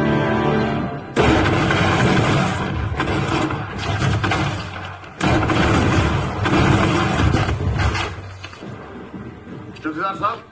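Film soundtrack: music with held notes cut off about a second in by a sudden, loud, noisy action sound effect full of sharp cracks. It dips briefly, comes back just as loud, then fades over the last two seconds.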